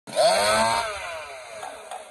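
Two-stroke gas chainsaw revved hard just after the start, then its pitch and loudness fall away over the next second as the throttle is let off. It is a saw being blipped before a competition cut.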